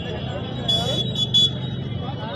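Busy street ambience: a steady low hum of traffic and crowd with faint distant voices. About a second in, a shrill high-pitched tone sounds three times, one longer pulse then two short ones.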